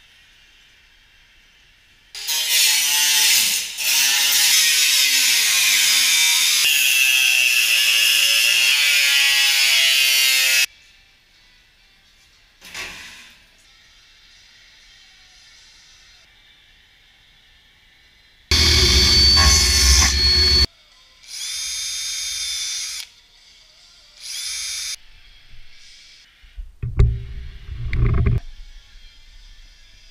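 Workshop tool noise in separate bursts: a power tool runs for about eight seconds with its pitch shifting up and down, then shorter bursts of tool noise follow, with a few sharp knocks near the end.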